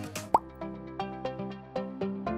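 Light background music with soft, evenly spaced notes, and a single short rising pop sound effect about a third of a second in.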